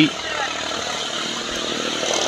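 Steady, even background noise with no distinct events, at a moderate level.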